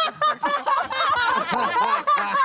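A group of people laughing together, several voices overlapping.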